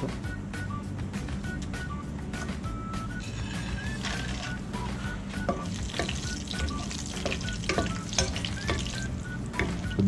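Cashews and whole spices sizzling in hot oil in a non-stick pot, with a spatula stirring and tapping against the pan. The sizzle grows louder about four seconds in. Background music plays throughout.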